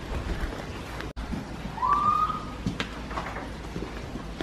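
A single short whistle about halfway through, rising and then holding its pitch for about half a second, over a faint low hum.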